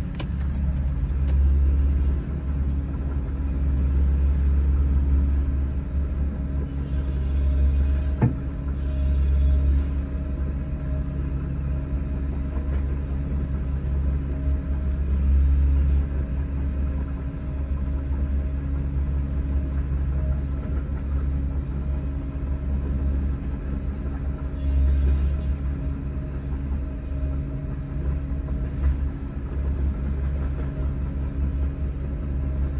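Steady low engine rumble heard from inside a vehicle's cabin, mixing the vehicle's own engine with a Case crawler excavator travelling ahead on its tracks, swelling and easing in loudness. A single sharp click about eight seconds in.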